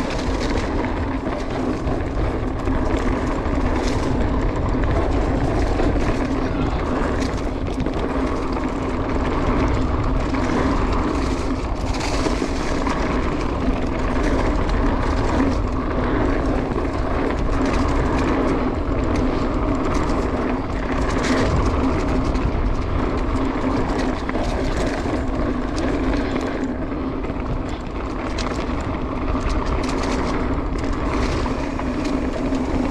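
Mountain bike descending a dirt singletrack: steady wind rush on the camera microphone over the rolling of knobby tyres, with frequent short clicks and rattles from the bike over bumps.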